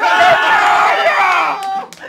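A person's loud, drawn-out high-pitched cry, held for about a second and a half and sliding slowly down in pitch before it breaks off.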